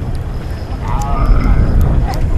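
Wood fire crackling, with sharp little ticks over a strong low rumble of wind on the microphone. A short voice-like call rises and falls about a second in.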